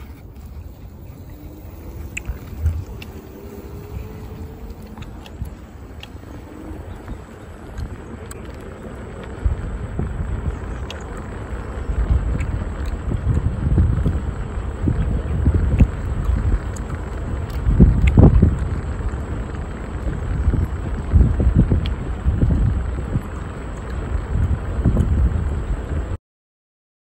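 Wind buffeting a phone's microphone while riding along on an electric rideable, with a low rumble that comes in gusts and grows stronger from about ten seconds in. A faint rising motor whine is heard in the first few seconds.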